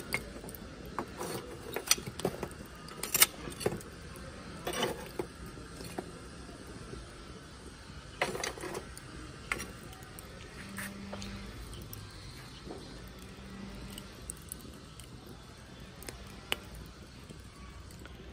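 Metal tongs clinking against lumps of charcoal and the sheet-metal grill as the coals are shifted, with sharp knocks coming in clusters in the first few seconds and again near the middle, then fewer.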